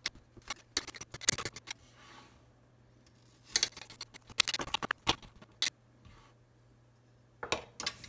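Kitchen knife cutting a green bell pepper and onion on a glass cutting board: the blade strikes the glass in sharp clicks and taps. The clicks come in three bunches: one at the start, a longer one in the middle, and a short one near the end, with quiet pauses between them.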